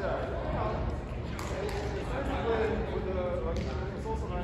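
Indistinct voices of people talking in a large reverberant hall, over a steady low rumble.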